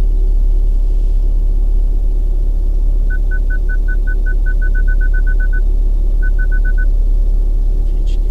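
A car's parking sensor beeping at one steady pitch, starting about three seconds in and speeding up as the car closes on an obstacle, then pausing and coming back in a shorter, faster run near the end. Under it runs the steady low rumble of the slow-moving car.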